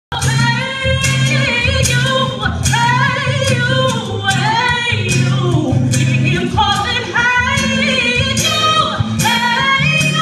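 An acoustic performance of a gospel song: a singing voice with vibrato over steady instrumental accompaniment.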